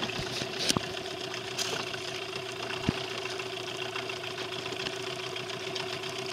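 Boat motor idling steadily with an even hum, with a couple of short sharp knocks, the loudest about three seconds in.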